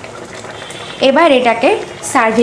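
Pomfret fish curry boiling on a high gas flame, a steady bubbling; a woman's voice comes in about a second in.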